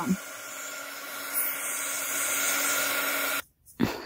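Small handheld Darice craft heat gun running steadily, a fan whir with a low hum, blowing hot air over damp coffee- and tea-dyed paper to dry it. It cuts off suddenly about three and a half seconds in.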